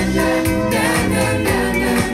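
Pop song with singing voices, played from a vinyl 7-inch single and reproduced through an all-horn five-way loudspeaker system in the room.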